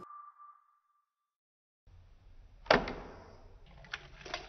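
A single high ringing tone fades out over the first second, then silence. Near the end comes a sharp knock with a short rattle at a plastic-lined kitchen trash bin, followed by lighter clicks and rustling as eggs are tossed in.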